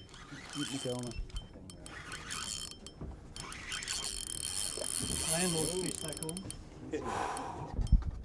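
Spinning reel being wound under load with a fine, rapid ticking of its gears as a big snapper on a bent rod is brought up to the boat.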